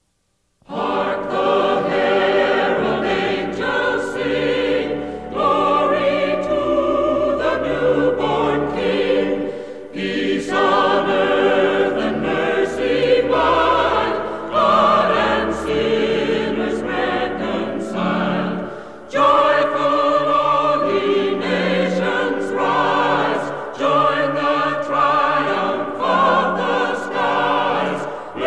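A choir singing a Christmas song in full, sustained chords that shift every second or two. It comes in after a brief silence about a second in.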